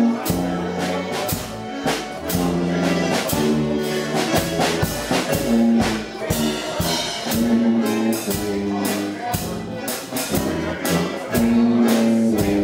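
Chemnitzer concertina playing a tune in full, sustained reedy chords with a steady pulse of accented notes.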